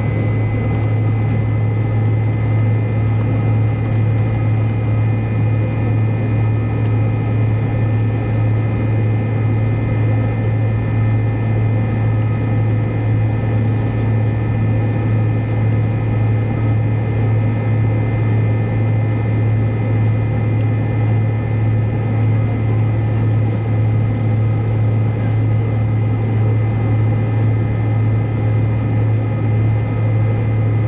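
McDonnell Douglas MD-88 jet heard from inside the rear cabin while taxiing, its two rear-mounted Pratt & Whitney JT8D turbofans running at low power. It is a steady, loud, low hum with a thin, even whine above it.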